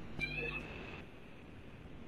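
Quiet room hiss in a pause between speech, with one short, faint, high-pitched call in the first half second.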